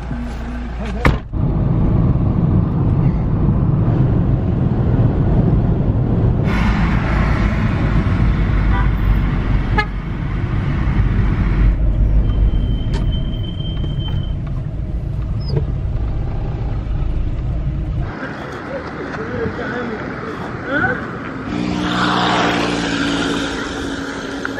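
Steady low rumble of a car's engine and tyres heard from inside a moving taxi, through several cuts. Near the end it gives way to lighter street traffic noise with a steady pitched drone.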